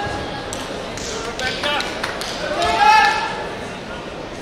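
Voices echoing in a large sports hall, one raised voice calling out loudly about three seconds in, with a few sharp knocks or claps in the first half.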